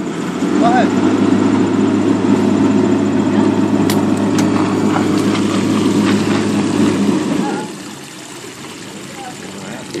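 Pickup truck engine running steadily while it takes up the tow rope on a car sunk in the water. It comes up loud about half a second in and drops away about seven and a half seconds in, with a few light clicks in between.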